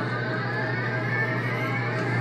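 Live droning experimental band music: a dense sustained wash over a steady low hum, with a single high tone slowly rising in pitch.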